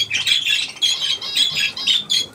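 Budgerigars chattering: a quick, unbroken run of short, high, scratchy chirps and squawks.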